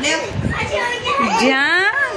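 Children's high-pitched voices calling out and squealing during rough-and-tumble play, with some bumping noise about half a second in.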